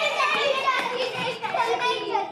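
Several children's voices talking and calling out excitedly all at once, a jumble of overlapping chatter.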